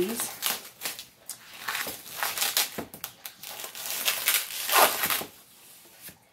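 Plastic wrap being torn and peeled off a foam tray of thin-sliced beef: irregular crinkling and crackling that stops about five seconds in.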